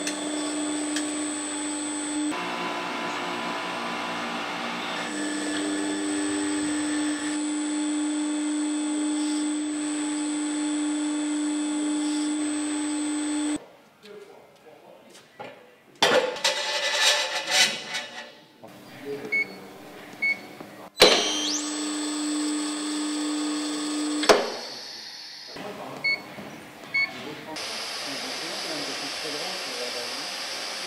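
Electric motors of heavy-duty mobile column lifts running with a steady hum as the lifts raise a coach, changing character at several cuts. About halfway the hum drops away, and a stretch of knocks and workshop clatter follows before the hum briefly returns.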